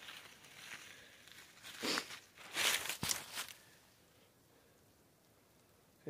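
A few footsteps rustling through dry fallen leaves, strongest about two to three seconds in, then quiet for the last couple of seconds.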